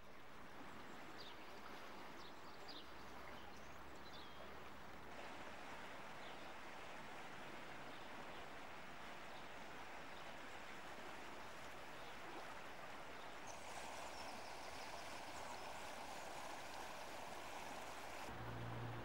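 Rushing water of a swollen river running high in spate after a flood, a steady wash that turns brighter and more hissing about thirteen seconds in. A few bird chirps sound in the first few seconds.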